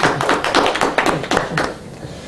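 A brief round of hand clapping: quick, irregular claps that die away near the end.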